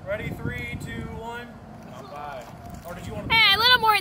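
Several men's voices talking and laughing, with one voice breaking into a loud, wavering shout near the end.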